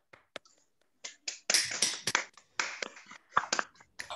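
Brief applause from a few people, a rapid run of sharp claps starting about a second and a half in, after a few isolated clicks.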